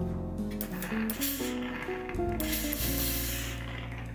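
Steam iron releasing steam in two hissing bursts, the second longer, as the eased sleeve head is steamed to shrink in its fullness. Acoustic guitar music plays underneath.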